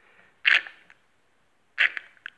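Two brief handling noises, about a second and a half apart, as a hand-held oil-filled hydraulic engine mount is tipped to slosh its fluid.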